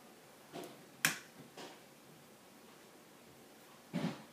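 A few sharp clicks and light taps from small objects being handled on a workbench, as a glass jar is set onto a small digital scale and a plastic Mini 4WD car is turned in the hand. The loudest click comes just after a second in.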